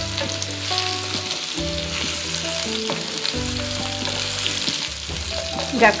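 Raw green mango pieces sizzling in a little hot oil with whole spices on a low flame, stirred with a wooden spatula. Quiet background music plays under the sizzle.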